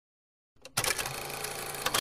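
A rapid mechanical clatter, an inserted sound effect, starting about half a second in after dead silence and cutting off abruptly at the end.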